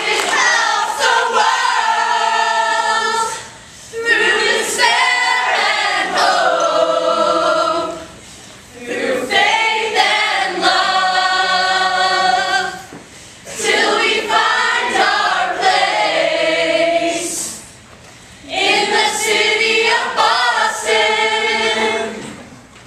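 A large group of young men and women singing together, in loud sung phrases broken by short pauses about every four to five seconds.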